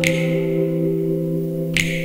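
Live band accompaniment to a slow ballad in a pause between sung lines: a sustained chord, with two sharp percussion hits, one at the start and one near the end.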